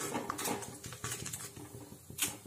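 Metal slotted spoon stirring and scraping across the bottom of an aluminium kadai of simmering semolina milk, in a run of uneven strokes, loudest at the start.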